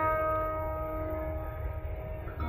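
The long ring of a single plucked Saraswati veena note, holding one steady pitch and slowly fading.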